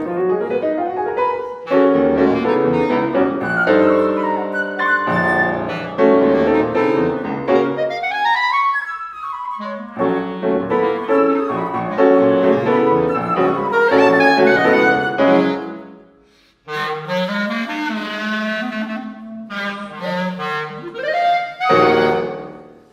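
Live chamber music for clarinet, flute and piano. The trio plays, breaks off about 16 seconds in, then the clarinet plays a short solo with quick runs and a rising glide, closing on a loud final note with the piano at the end.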